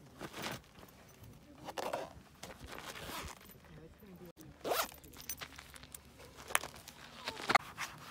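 Zipper on a tall leather riding boot being worked in several short, quick pulls.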